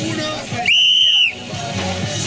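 One loud, steady whistle blast lasting about half a second, about a second in, over crowd chatter and background music.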